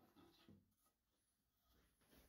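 Near silence: faint room tone with a few soft rustles in the first half second.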